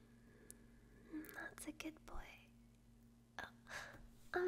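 A woman whispering very softly: a few faint, breathy whispered sounds about a second in and again near the end, over a low steady hum.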